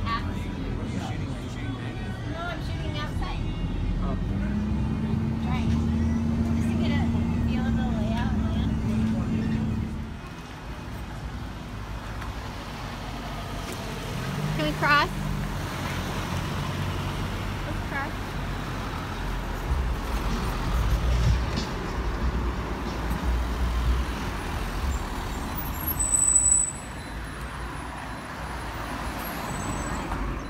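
City bus engine running inside the cabin, its pitch rising about four seconds in as it pulls away, with voices in the background. After about ten seconds it gives way to street traffic noise, with a short squeal midway.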